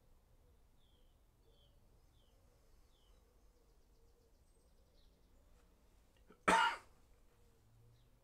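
A single short cough from a man sitting close to the microphone, about six and a half seconds in, against a quiet room. A few faint bird chirps come from outside in the first few seconds.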